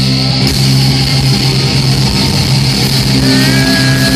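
Live hard rock band through a PA: distorted electric guitars and bass holding a sustained chord. About three seconds in, a high lead guitar note slides up and is held.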